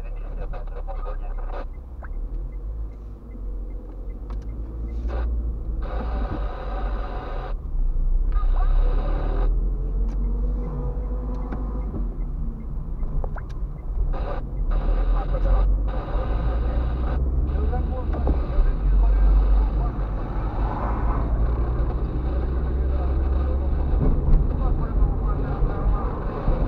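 Steady low road and engine rumble heard from inside a moving car's cabin.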